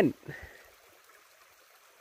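Faint, steady trickle of a shallow creek running over stones, just after a spoken word.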